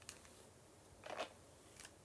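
A few short swishes and clicks as a hair straightener and a paddle brush are drawn through long hair: a brief click at the start, a longer swish about a second in, and another short one near the end.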